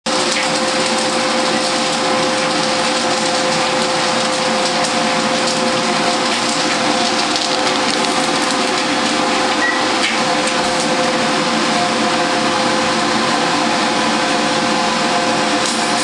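Steady loud rushing noise with a constant hum from a commercial kettle corn popping kettle and the overhead exhaust hood above it, running at an even level throughout.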